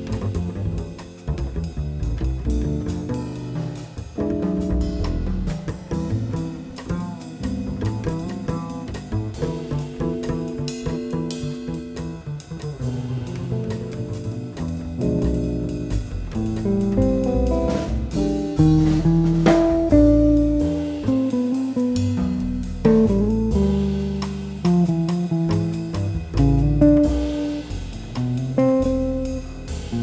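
Jazz guitar trio playing: an electric guitar plays a melodic line over bass and drum kit. The music grows louder a little past the middle.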